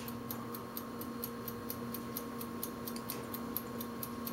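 Faint, rapid, steady ticking, about five ticks a second, over a low steady hum.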